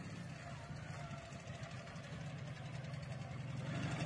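A motorcycle engine, the vehicle draped in camouflage netting, running steadily as it drives toward the listener. It is a faint, even hum that slowly grows louder as it comes nearer.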